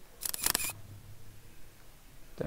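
A rapid cluster of sharp clicks lasting about half a second, followed by a faint low hum.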